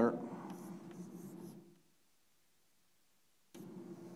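Chalk on a blackboard: short scratches as lines and boxes are drawn, dying away after about a second and a half. Near the end comes a sharp tap of the chalk on the board, then more writing.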